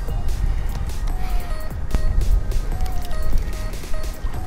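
Background music with a short melodic figure repeating about once a second, over wind rumbling on the microphone.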